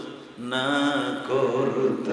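A man's voice chanting a sermon in a drawn-out, sing-song style, with long held and wavering notes starting about half a second in after a brief pause.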